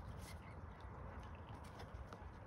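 Faint soft clicks and nibbling of mute swans preening, their bills working through their feathers, over a low steady rumble.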